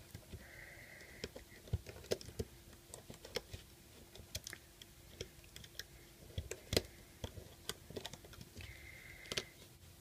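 Faint, irregular small clicks and taps as rubber loom bands are worked off the pegs of a plastic Rainbow Loom with a metal hook.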